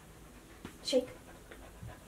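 Mini goldendoodle panting quietly while it sits.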